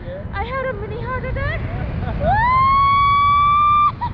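A woman's long, loud, high-pitched scream of delight that rises and then holds for nearly two seconds, starting about halfway in after some shorter vocal sounds. Wind noise rushes on the microphone underneath.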